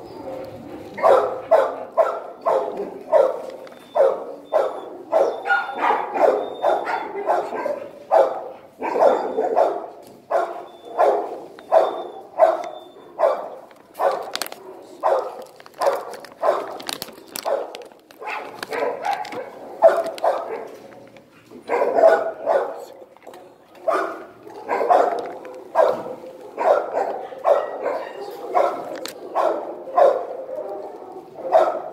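Dog barking over and over, about two barks a second, with a few short breaks.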